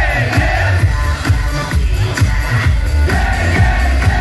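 Live band playing a pop song, drum kit and electric guitar over heavy booming bass, with a male voice singing into a microphone. The drum beat is steady and even, heard from within the audience.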